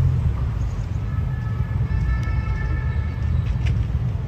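Steady low rumble of city traffic, with a faint high-pitched squeal between about one and three seconds in.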